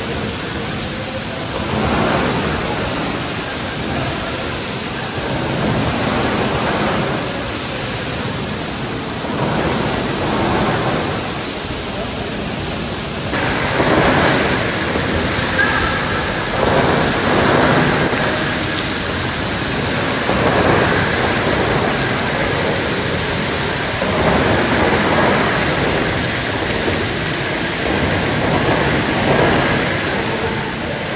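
Vřídlo hot-spring geyser jetting water that falls back into its stone basin as a steady, rain-like splashing rush, swelling slowly and getting louder and brighter about halfway through.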